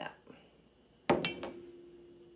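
A glass canning jar struck once with a sharp clink about a second in, then ringing on with one steady tone as a daffodil stem is set into it.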